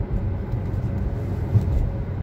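Dodge Challenger R/T's 5.7-litre Hemi V8 and road noise heard from inside the cabin while driving: a steady low rumble, with two brief low bumps, one at the start and one about a second and a half in.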